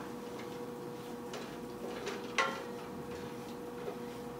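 Wooden spoon stirring lentils in a skillet, giving a few scattered clicks and knocks against the pan, the sharpest about two and a half seconds in, over a steady kitchen hum.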